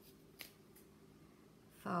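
Scissors snipping through a bundle of satin ribbon ends: one sharp snip just under half a second in and a fainter one shortly after.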